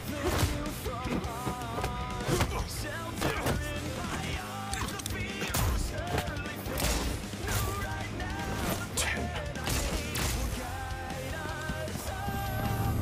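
Battle music from an animated fight scene's soundtrack, with many sharp hits and gunshot sound effects over it.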